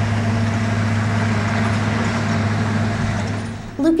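A vehicle engine running steadily, a low even hum under a wash of noise, starting abruptly and fading out just before a voice begins near the end.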